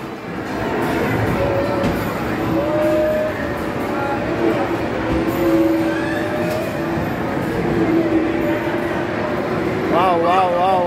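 Arcade racing game sound from the cabinet's speakers: a steady, loud engine-and-road rumble with long, slowly drifting pitched tones over it.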